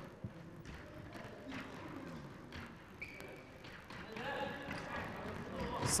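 Game sounds of an indoor small-pitch football match on a wooden gym floor: players' distant shouts, footsteps and thuds of the ball. A brief high tone about three seconds in.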